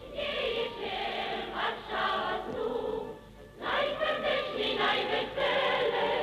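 A choir singing with musical accompaniment, dull-sounding, with nothing above the middle treble, and a short break about three and a half seconds in.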